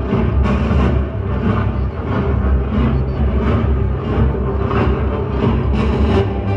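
Dramatic orchestral music with a steady drum beat about twice a second.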